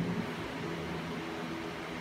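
Steady room noise, a low hum with an even hiss, in a pause in speech.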